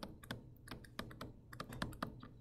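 Stylus tapping and clicking on a tablet screen while handwriting: a faint, quick, irregular series of small clicks.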